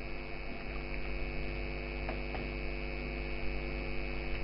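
Steady electrical mains hum with a stack of harmonics on the recording, with a few faint keyboard clicks as a command is typed.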